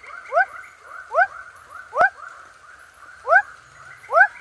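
Rough-sided frog calling: a short rising 'what' note repeated about once a second, with fainter calls in between, over a steady high drone in the background.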